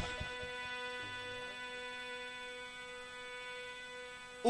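A quiet, steady sustained drone note from the musical accompaniment, rich in even overtones and slowly fading.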